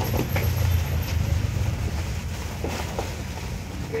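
Used sneakers being tossed onto a heap of shoes, giving a few soft knocks and thuds over a steady low rumble.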